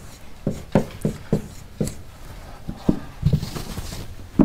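Marker writing on a whiteboard: a string of short, irregular taps and strokes as the pen meets the board.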